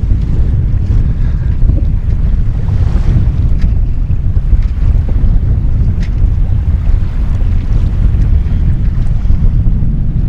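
Wind buffeting the microphone: a loud, unsteady low rumble, over a breezy estuary with choppy water.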